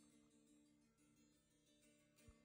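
Electric guitar played very softly: faint chord tones ringing, with a new chord struck about a second in.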